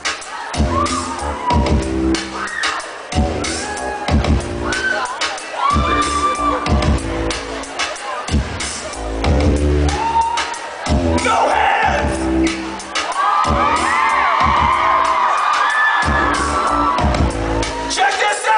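Live band music through a club PA: a bass line played in short stop-start phrases with brief gaps. The crowd whoops and screams over it, swelling loudest from about eleven to seventeen seconds in.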